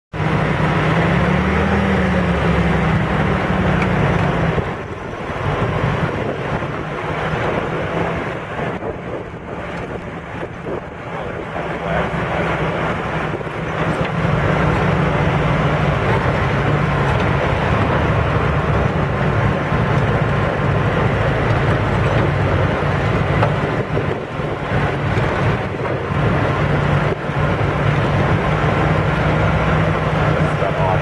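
Off-road vehicle's engine running as it drives a rough dirt trail, over the noise of the ride. The engine note rises briefly near the start, eases off and quietens for several seconds, then runs steadily louder again.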